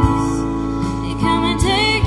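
A worship band playing a slow song live: a female voice singing over keyboard, piano and electric bass, with the bass holding low notes underneath.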